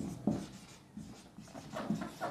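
Marker pen writing on a whiteboard: a series of short, faint strokes as a word is written.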